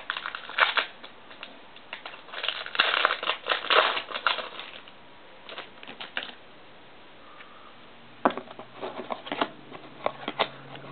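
Foil trading-card pack wrapper being torn open and crinkled, and the cards inside rustling and clicking as they are handled. It comes in bursts: briefly about half a second in, for about two seconds from around two and a half seconds, and again from about eight seconds, with a quieter lull between.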